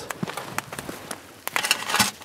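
Wood fire crackling inside a steel burn barrel: scattered sharp pops, with a quick cluster of sharper crackles near the end.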